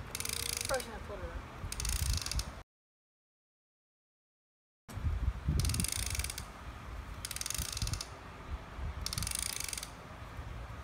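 Plastic ratchet dial on top of a Wet Head game hat being turned by hand, giving short bursts of rapid clicking about every two seconds. The sound cuts out completely for about two seconds between the first and second halves.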